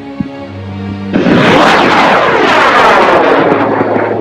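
Aerotech M1340 98 mm solid-fuel rocket motor at liftoff: a loud, steady roar that arrives suddenly about a second in and carries on as the rocket climbs, with a sweeping, phasing quality.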